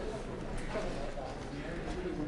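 Low murmur of background conversation in a large chamber, with faint footsteps and shuffling as people move about.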